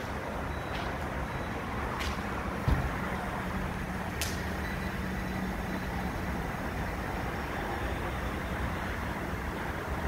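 Steady low rumble of vehicle and traffic noise at a gas station forecourt, with one short thump about two and a half seconds in and a few faint clicks.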